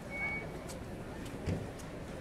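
City street traffic noise, with one short high electronic beep near the start and a dull low thump about a second and a half in.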